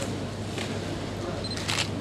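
A pause in a speech over a hall's microphone: steady background hiss of the room and sound system, with one short, sharp high sound near the end.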